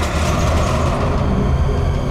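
Suspense background score for a crime drama: a loud, low rumbling drone with a hiss over it, steady throughout.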